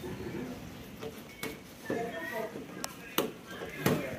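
Kitchen knife working a boca colorada (red snapper) on a metal table as it is scaled and cut, giving a few sharp clicks and knocks of the blade against the fish and the table, under background chatter.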